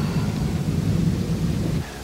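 Low, steady thunder rumble, a dramatic sound effect under the promo's close, cutting off sharply just before the end.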